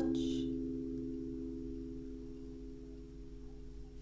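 Final acoustic guitar chord ringing out and slowly fading away at the close of the song.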